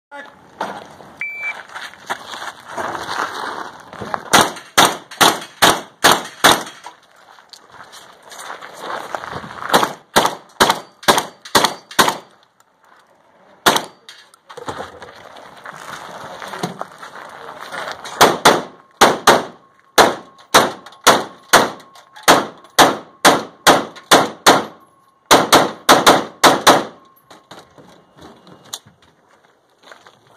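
A shot timer beeps once about a second in, then fast strings of gunshots follow, several shots a second, broken by short pauses, as a practical-shooting competitor fires a timed stage.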